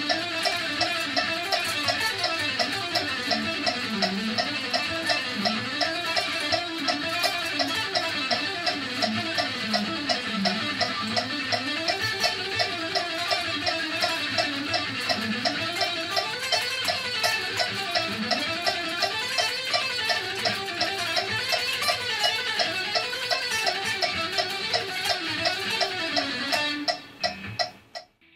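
Electric guitar playing a perpetual-motion piece, an unbroken run of very fast even notes, in time with a metronome ticking at 168 bpm. The playing stops about a second before the end.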